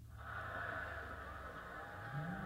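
Faint, muffled playback of a fight video from a computer, picked up from across the room: a steady hiss-like background that starts abruptly and holds at low level.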